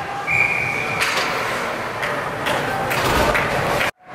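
Ice hockey rink sound: a steady wash of arena noise with a few sharp knocks of sticks and puck, and a short high referee's whistle blast about a third of a second in, blowing play dead after the goalie's save. The sound drops out briefly just before the end.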